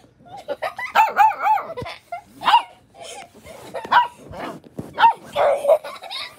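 Puppy barking: a quick run of high yips about a second in, then single barks about once a second.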